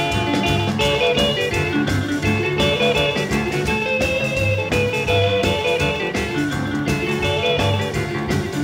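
Rockabilly band playing an instrumental break between verses: an electric guitar lead over a steady beat.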